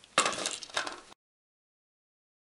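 Hinged wooden arm on a board flopping over and clattering, with metallic clinks from the small hinge and screw-eye ring, for about a second. Then the sound cuts off abruptly.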